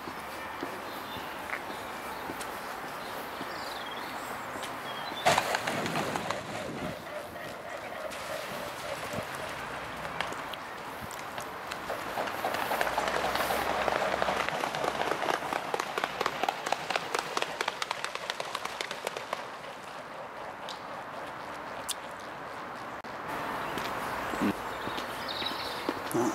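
A swan taking off from the river, its feet slapping the water and its wings beating in a quick rhythmic patter that swells in the middle and then thins out. A single sharp knock comes earlier, over a steady outdoor background.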